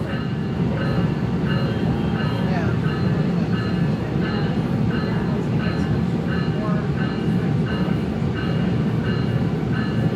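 SMART diesel multiple-unit passenger train heard from inside the cabin while running at speed: a steady, continuous rumble of the wheels and running gear on the track.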